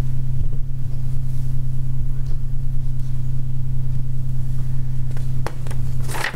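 A steady low hum at a constant pitch, with a short click near the end.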